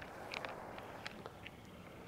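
Several golf clubs being handled and swung together, giving a few light clicks and taps over a faint outdoor background.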